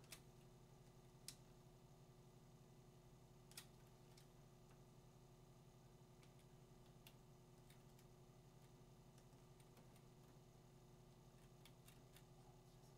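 Near silence with a low steady electrical hum and a scattering of faint clicks from computer keys and pointer buttons, the three sharpest within the first four seconds.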